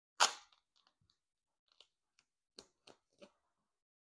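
A blade cutting through soft upholstery foam, trimming a foam filler flush with a seat cushion: one short, loud cut just after the start, then a few quieter short cuts and scrapes near the end.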